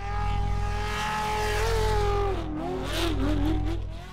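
Car sound effect: a steady, high-pitched note with a low rumble beneath it. The note wavers in pitch in the second half, and a short burst of noise comes about three seconds in.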